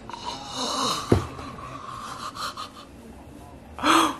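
A person's drawn-out, hoarse, breathy exhale, the sound of someone reacting in shock. There is a sharp click about a second in and a short loud breathy burst near the end.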